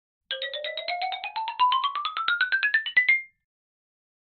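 A short musical jingle: a quick run of short struck notes, about ten a second, over a tone that glides steadily upward. It lasts about three seconds and stops abruptly.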